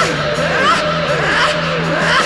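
Theremin in a live rock band, swooping in repeated up-and-down pitch glides, two or three a second, over a steady low held note.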